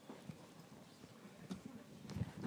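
Faint footsteps and a few scattered soft knocks as a person walks across a stage and handles things at a table.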